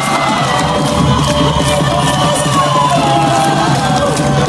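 Live band music played loud through a concert sound system, with a steady beat, heard from within the audience, and the crowd cheering over it.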